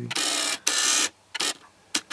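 Handling noise from the camera being moved: two short rubbing, scraping noises, then a few light clicks.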